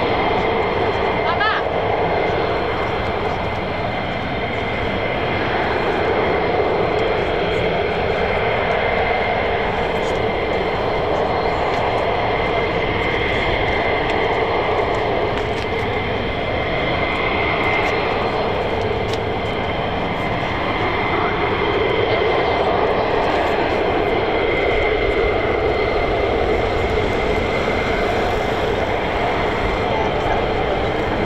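F-15E Strike Eagle jet engines idling on the ground: a steady loud whine with constant high tones, swelling and easing slightly in level.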